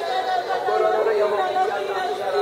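Many voices talking at once, an unbroken murmur of overlapping speech from the congregation.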